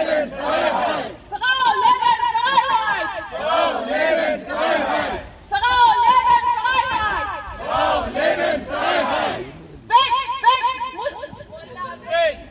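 Protest crowd chanting slogans together through a microphone and loudspeaker, in repeated rhythmic phrases of one to four seconds with short breaks between them.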